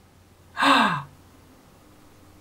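A woman's short voiced sigh, a single 'aah' that falls steadily in pitch, lasting about half a second a little past half a second in.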